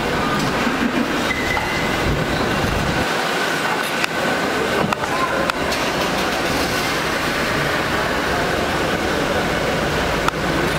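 Steady vehicle and traffic noise around a car, with indistinct voices underneath and a few short clicks about four and five seconds in.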